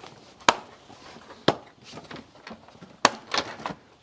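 A hard plastic storage crate being handled: a few sharp plastic knocks and clicks, about three loud ones with smaller taps between, as the crate is set down and its lid latches are snapped open.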